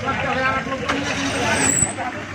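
Men's voices raised in a street scuffle, over the running noise of road traffic, with one sharp knock about a second in.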